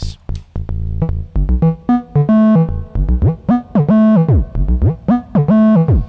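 Modular synthesizer melody sequenced by the USTA sequencer, its pitch passed through USTA's integrator, so the notes glide up and down into one another (portamento). In the first second a few clicks from a patch cable being plugged sound over a low held tone before the gliding melody starts.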